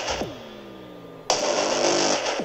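Horror sound effect: a quick downward swoop that settles into a low drone, sliding slowly down in pitch, broken about a second in by a sudden burst of static hiss.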